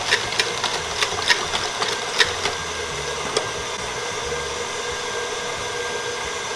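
KitchenAid Heavy Duty stand mixer motor running steadily with its wire whip whipping all-purpose cream in the steel bowl, with a few sharp ticks in the first few seconds.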